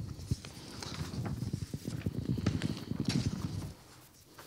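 Handling noise from sheets of paper being shuffled in the same hand as a handheld microphone: a run of irregular soft clicks and rustles that dies away near the end.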